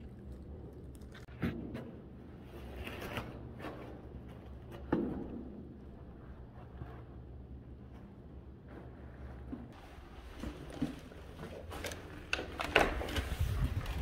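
Quiet hallway room tone with a steady low hum and a few scattered knocks and thumps. Near the end a louder low rumble of outdoor wind noise comes in as the door to the outside is opened.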